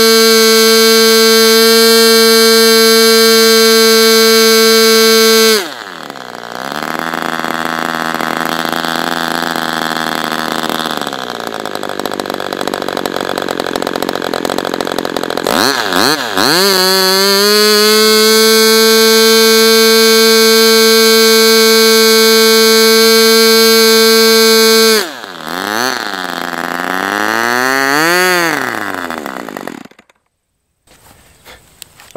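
Super Tigre G40 two-stroke glow engine with propeller running at full throttle, a high, steady scream near 13,600 rpm. About a third of the way in it drops to idle, then climbs back to full speed and holds; near the end it is blipped up and down a few times and cuts off. The owner thinks its front bearings may need replacing.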